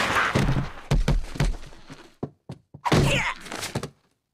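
Cartoon slapstick impact sound effects: a loud rush at the start, then several heavy thuds about a second in as a body is thrown and slams down, followed near the end by a short vocal cry.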